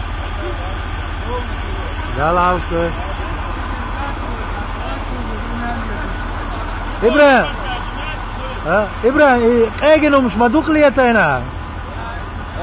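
Military truck engine idling, a steady low rumble, with men's voices calling out over it about two seconds in and again, louder, in the second half.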